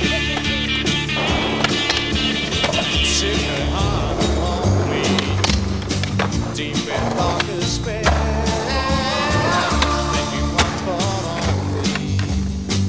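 Skateboard wheels rolling on concrete, with repeated sharp clacks of the board being popped and landed, over rock music.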